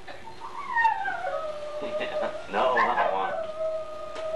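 Dog howling: a long falling howl, a short yelping burst, then a second held howl near the end.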